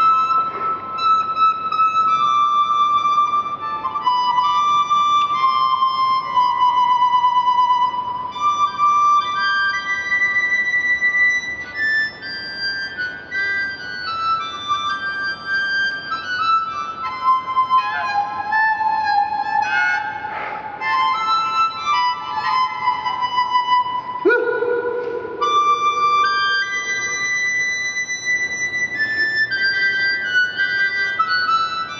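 A high G harmonica played solo in a blues style: a wandering melody of held high notes with quick bends and shakes, and a lower, fuller note coming in sharply about 24 seconds in.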